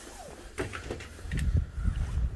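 Glass storm door being opened: a few sharp clicks of the handle and latch, then low thumps and rumble as the door swings out and is stepped through.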